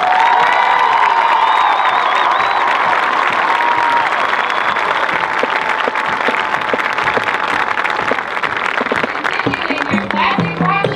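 Large stadium crowd applauding and cheering at the end of a marching band's piece, the applause dense and steady and slowly tailing off near the end.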